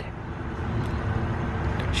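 Steady low outdoor background rumble with no distinct event in it.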